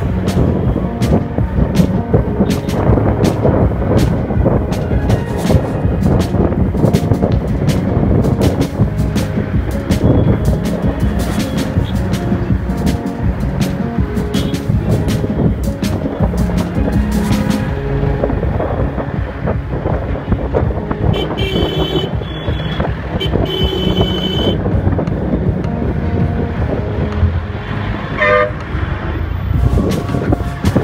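Dense city traffic heard from a moving motorcycle: engine and road noise, with vehicle horns honking. Several horn blasts come a little past the middle and one more near the end.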